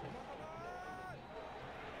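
Faint open-air background noise, with a distant voice calling out once for under a second, about a third of the way in, its pitch rising slightly and then dropping off.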